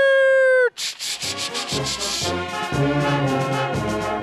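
Train sound effect: a loud steady whistle blast that cuts off just under a second in, followed by rhythmic chugging of a steam train getting under way.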